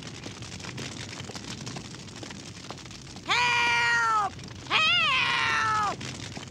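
Two long high-pitched wailing cries, each about a second. The second wavers before it falls away. Before them, a steady crackling haze like a house fire burning.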